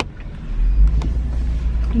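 Low engine and road rumble of a moving vehicle heard from inside its cabin, growing louder about half a second in.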